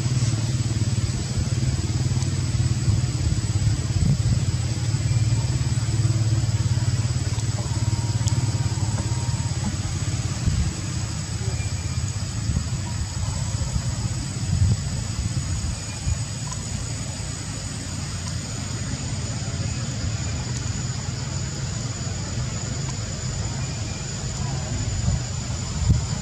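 Steady outdoor background: a continuous low rumble, with an even hiss and a thin, steady high whine over it.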